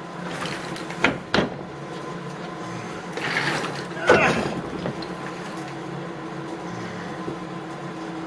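Oil pump housing being pried and worked off the front of a Subaru 2.5 SOHC engine block: two sharp metal clicks about a second in, then a longer scraping and rattling as the pump comes free, over a steady low hum.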